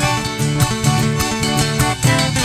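Live folk band playing an instrumental passage: acoustic guitar, violin, accordion, bass and drums, with a steady beat.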